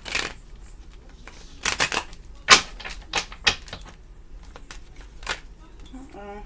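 A tarot deck being shuffled by hand: a string of sharp card slaps and snaps at irregular intervals, the loudest about two and a half seconds in.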